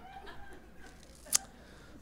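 A faint murmur from a theatre audience during a pause, with a single sharp click a little over a second in.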